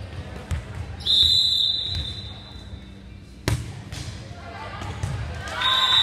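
Referee's whistle blowing once for about a second, a single sharp smack of a volleyball being hit around the middle, then a second whistle near the end with players' voices calling out in a gym.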